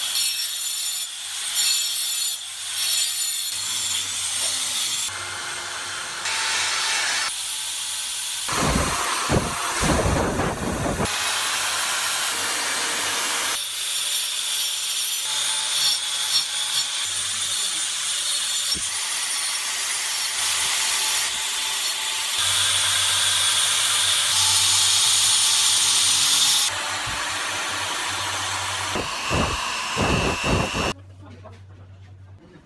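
Handheld power tools working a large block of ice: a small rotary tool's cutting disc grinding into the ice and an electric drill boring into it. The sound comes in several stretches that change abruptly from one to the next.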